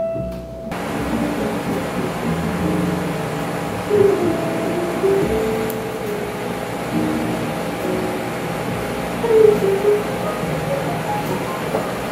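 Piano music cuts off abruptly just under a second in, leaving steady room noise with faint music and muffled sounds beneath it.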